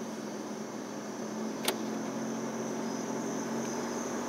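A car picking up speed at low speed, heard from inside: steady engine hum and road noise, with a steady high-pitched whine over it. A single sharp click comes a little before halfway.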